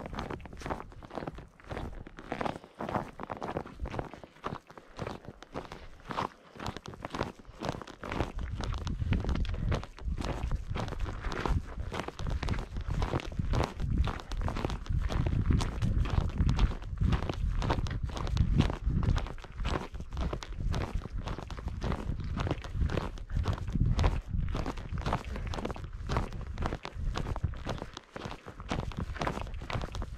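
Steady footsteps of a backpacker walking on a dry, rocky dirt trail, about two steps a second, with a low rumble on the microphone from about eight seconds in.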